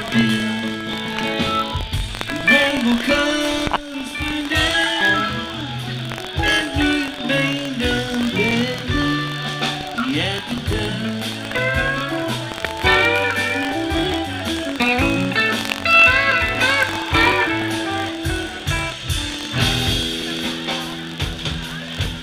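Live rock band playing, with two electric guitars over drums; the lead guitar plays lines with bent notes. No singing is heard.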